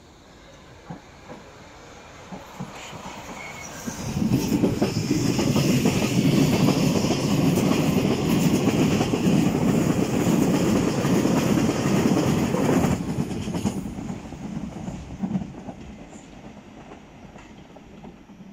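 Berlin U-Bahn train running past close by on the rails. It grows louder over the first few seconds, is loudest for about nine seconds from around four seconds in, then fades away.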